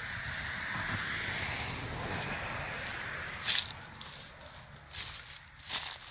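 Footsteps of a person walking along a narrow path beside shrubs, with rustling as they brush the foliage. A sharper brushing rustle comes about three and a half seconds in.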